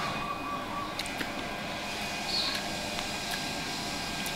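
Steady background hum of room noise with a few faint light clicks of a spoon and fork against a plate while eating.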